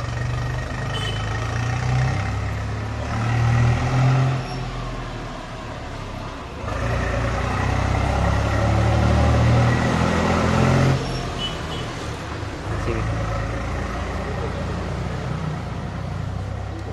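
An engine running with a low rumble that grows louder for about four seconds in the middle, under indistinct voices.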